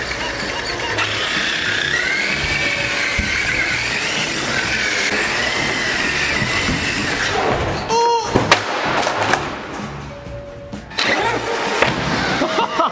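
Traxxas X-Maxx RC monster truck's electric motor whining, rising and falling in pitch with the throttle over background music with a steady bass line. A sharp knock with ringing comes about eight seconds in, and the whine is gone after about seven seconds.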